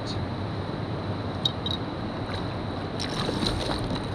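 Steady wind and water noise around a kayak, with a few small clicks about a second and a half in and again near the end.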